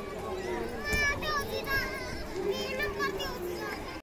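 Many children's high-pitched voices chattering and calling out at once, overlapping. A thump about a second in is the loudest moment.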